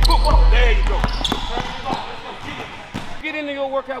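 Basketballs dribbled on a hardwood gym floor, a few sharp bounces in the first half second, over background music that fades out about a second in; voices follow.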